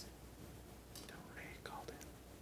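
A quiet pause over a steady low hum, with a faint, indistinct voice in the second half.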